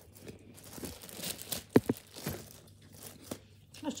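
Clear plastic bag crinkling and rustling as it is pulled back off a hard carry case, with one sharper crackle a little under two seconds in.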